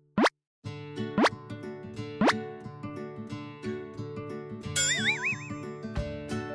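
Three quick rising cartoon 'bloop' sound effects about a second apart, over children's background music that starts just after the first one. Near the end a wobbly, warbling whistle-like effect plays over the music.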